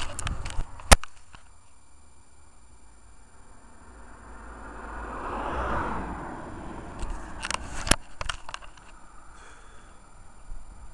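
Clicks and knocks of a handheld camera being moved about, with one sharp knock about a second in and a cluster of clicks near the end. In the middle a vehicle passes, swelling and then fading over about three seconds.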